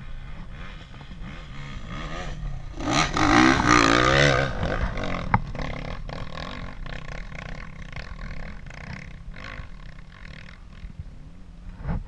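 Dirt bike engine revving hard under load on a steep hill climb, the revs rising and falling. It is loudest about three to four seconds in, with one sharp knock shortly after, then fades as the bike goes over the crest.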